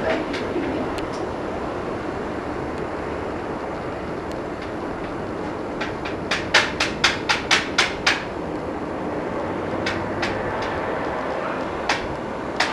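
A steady outdoor background hum, with a quick run of about nine sharp knocks, several a second, midway through and a few single knocks near the end.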